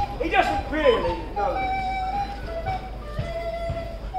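A voice swooping up and down in pitch during the first second, followed by a few held musical notes, in a large, reverberant tent.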